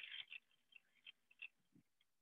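Near silence, with a few faint, short ticks.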